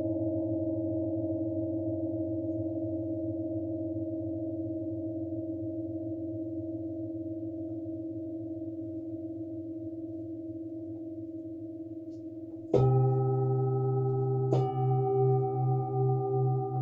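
Large metal singing bowls ringing with long sustained tones that slowly fade. Near the end a bowl is struck, starting a new, louder set of tones, and a second strike follows under two seconds later, the low tone then wavering in a slow, even pulse.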